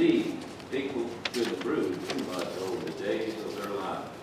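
A congregation reading a responsive line aloud together, many voices speaking in unison, distant and blurred.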